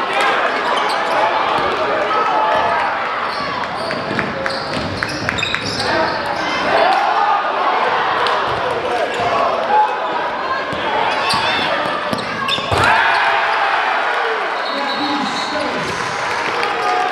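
Basketball game in a gym: the ball bouncing on the hardwood court among shouting players and crowd voices, all echoing in the hall, with a sharp knock near the end.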